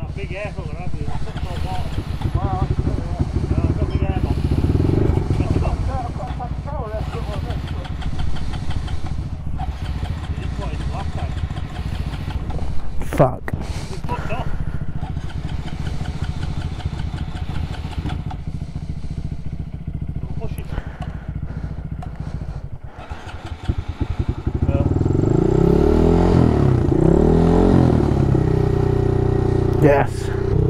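Honda Monkey 125's single-cylinder four-stroke engine idling steadily. About 23 seconds in it dips briefly, then runs louder with the revs rising and falling. The engine keeps cutting out, which the rider suspects is water that got into the air filter.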